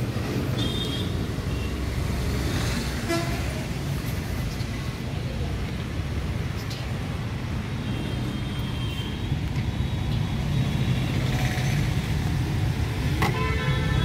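Steady rumble of street traffic, with short high-pitched vehicle horn toots a few times.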